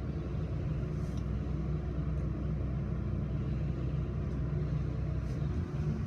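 Passenger elevator travelling between floors: a steady low hum and rumble from the moving car and its drive.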